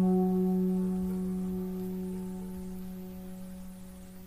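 The final note of an acoustic song's accompaniment ringing on after the last sung line, one held pitch with its overtones that slowly fades away.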